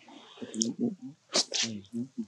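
People talking in a non-English language, with a short, sharp burst of noise about one and a half seconds in.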